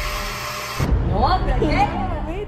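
A countertop blender running with a dense whirring hiss that cuts off abruptly just under a second in. Excited voices exclaiming follow.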